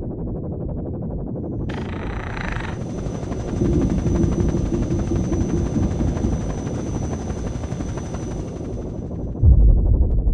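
Helicopter with a fast low rotor chop. A steady high whine and rushing hiss come in about two seconds in and fade away near the end, followed by a heavy low thud.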